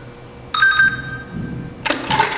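A short electronic chime of several tones at once, as a smartphone is held to a realtor's electronic key lockbox, signalling the box being accessed. Near the end, a sharp click and rattle.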